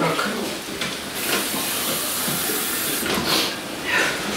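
Water poured from a cup into a hot frying pan of browned duck meat and vegetables, sizzling and hissing with steam. This is the liquid going in to braise the meat. The hiss swells a little over a second in and holds steady until near the end.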